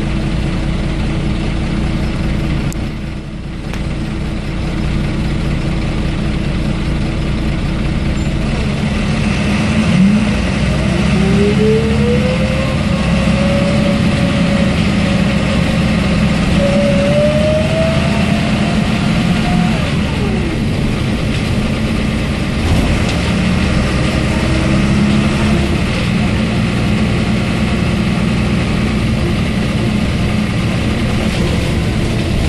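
Interior of a MAN NG272 articulated city bus: the diesel engine drones steadily. About ten seconds in, a whine rises in pitch in steps for roughly ten seconds as the bus accelerates, then fades.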